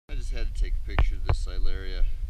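A man's voice speaking briefly, ending on a long, steady held tone, over a low rumble.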